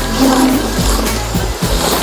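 Street traffic passing close by: a car driving past with steady tyre noise on the road, with music playing underneath.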